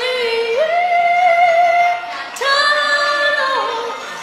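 A woman singing a Burmese song, holding long notes. The first rises to a higher pitch early and is held until a brief break about two seconds in. A second long note then drops away near the end.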